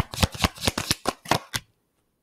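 A deck of tarot cards being shuffled by hand: a quick run of crisp card slaps, about five a second, that stops about one and a half seconds in.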